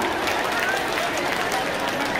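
Crowd hubbub: many people talking at once, with scattered hand-clapping.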